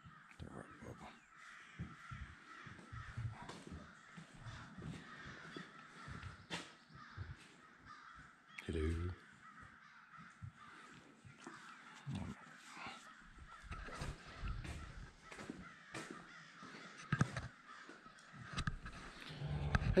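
Crows cawing repeatedly throughout, fairly quiet, with scattered sharp knocks.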